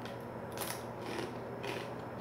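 Crunching as a Takis Fuego rolled corn tortilla chip is bitten and chewed: several crisp crunches about half a second apart.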